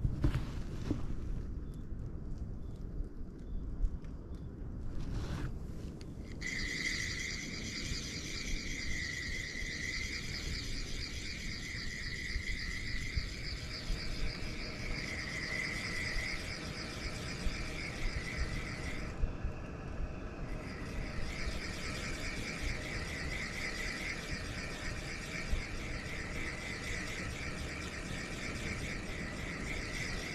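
Night insects trilling steadily in a high-pitched chorus that starts about six seconds in and breaks off for a couple of seconds around two-thirds of the way through, over a constant low rumble.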